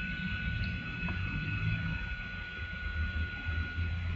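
Background noise of the recording during a pause: an uneven low rumble with a faint, steady high whine and light hiss.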